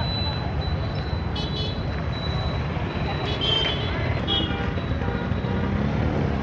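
Busy street traffic: motorbikes and scooters running past with a steady low rumble, a few short horn beeps, and voices in the background.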